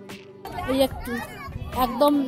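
High-pitched voices chattering and calling, starting about half a second in, with soft background music under the opening moment.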